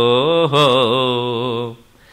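A man chanting a Sanskrit devotional verse in melodic recitation, holding one syllable with a wavering, ornamented pitch that fades out shortly before the end.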